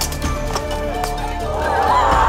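Background music with a low steady drone and held tones, cut through by a run of sharp knocks, with a voice rising near the end.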